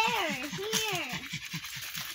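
A pug panting hard in a quick, even rhythm, with a woman's voice calling out briefly near the start.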